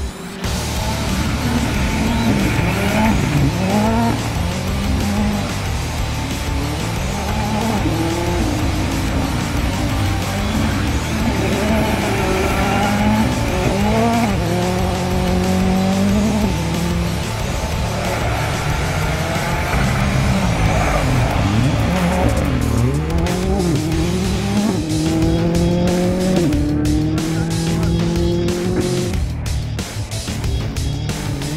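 Rally car engine revving hard through the gears, its pitch climbing and dropping back at each shift several times over, with music playing underneath.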